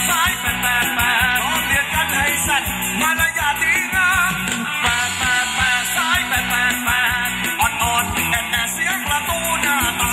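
Live Thai ramwong dance music from a band: a female-pitched sung melody over drums and bass keeping a steady, driving beat.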